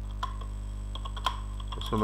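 Computer keyboard being typed: a few scattered, separate key clicks over a steady low hum.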